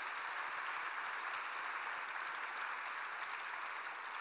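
Audience applauding steadily, a dense, even clapping from a large crowd.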